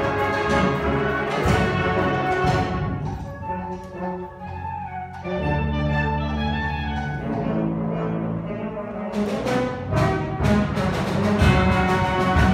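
School symphonic band of brass, woodwinds and percussion playing a film-score arrangement. The loud full band drops about three seconds in to a softer passage of low held notes, then swells back to full volume with percussion strokes in the last few seconds.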